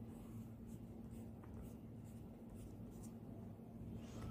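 Faint scratching of a pencil drawing on paper in short strokes, over a faint steady low hum.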